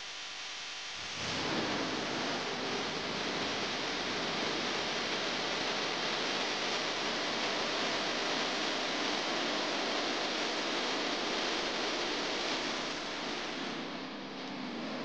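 A faint hum, then about a second in a steady hiss of noise sets in and holds with no distinct events.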